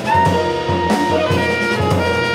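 Live jazz sextet playing: tenor and alto saxophones sound a held melody line over piano, double bass, drums and vibraphone.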